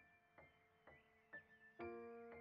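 Soft background piano music: single notes struck about twice a second over held lower notes, with a fuller chord struck near the end.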